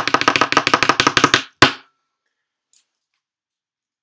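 Improvised drumroll tapped on a tabletop: a fast run of knocks, about nine a second, ending in one loud hit about one and a half seconds in.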